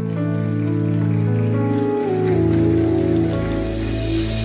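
Soft instrumental music of held keyboard chords that change pitch in steps. A deep bass note comes in about three seconds in.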